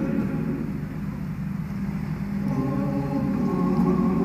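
A national anthem playing, with sustained choir-like voices over a low rumble; it thins a little about a second in and swells fuller again about two and a half seconds in.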